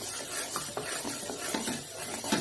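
Wooden spatula stirring whole coriander seeds with cloves, cardamom and cinnamon as they dry-roast in a metal pan: a rattling scrape of seeds against the metal in repeated strokes, about three or four a second.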